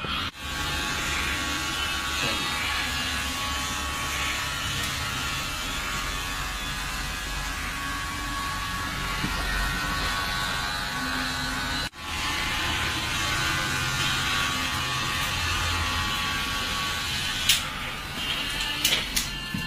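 Electric hair clippers buzzing steadily while cutting a customer's hair, with one brief break about two-thirds of the way through.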